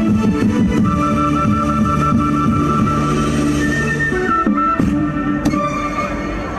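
Music playing for a dance, with held notes; the lower part drops away about four and a half seconds in, leaving a thinner high line.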